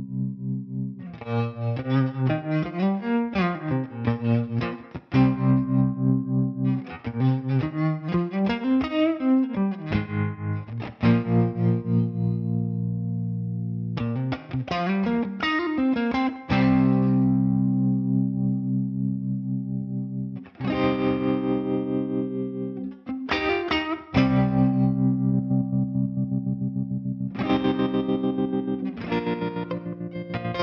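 Electric guitar played through a Magnetic Effects Electrochop optical tremolo pedal, its volume pulsing rhythmically on held chords and on phrases with sliding notes.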